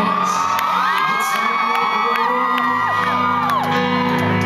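Concert audience screaming and whooping over the band's keyboard music: many high voices overlap, each held a second or two and then falling off, and they die away near the end.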